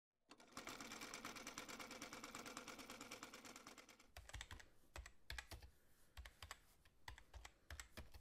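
Faint mechanical clicking: a rapid, even run of clicks for the first few seconds, then slower separate clicks with soft thuds, like keys being typed as a title spells out.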